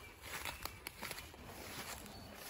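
Faint footsteps through leafy undergrowth on a forest floor: scattered light crunches and ticks over a low rumble.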